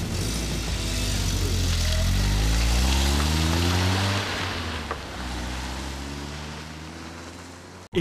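A car engine revving, its pitch rising in the middle and then fading away as if the car drives off, over background music.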